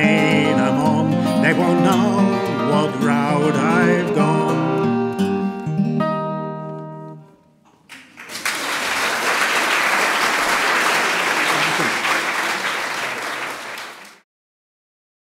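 Acoustic guitar and violin play the closing bars of a folk tune, the violin with vibrato, ending on a held chord that dies away about seven seconds in. After a brief pause the audience applauds steadily, and the applause cuts off near the end.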